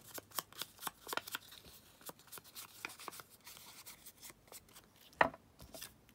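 Foam ink blending tool dabbed and rubbed around the edges of a paper piece. A quick run of soft taps comes in the first second and a half, then sparser taps and light rubbing, with one sharp knock about five seconds in.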